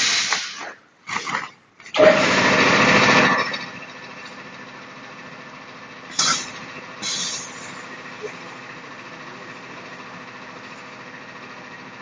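Perlite mortar packing machine: several loud hissing bursts of air in the first few seconds, the longest a little over a second, as the bag is clamped onto the filling spout. Then a steady machine hum while the bag fills, broken by two short hisses about six and seven seconds in.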